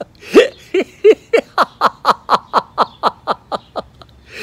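A man laughing in a long, rapid run of 'ha' pulses, about four a second, opening with a louder burst: the deliberate, sustained laughing of laughter yoga.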